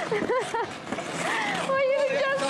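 Voices of people calling out with wordless, drawn-out exclamations, one held for nearly a second near the end.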